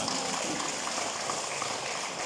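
A steady, even hiss of background noise with no distinct events, in a brief pause of a man's amplified talk.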